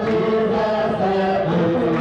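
A group of voices singing together in a slow, chant-like hymn, holding notes and stepping from one pitch to the next.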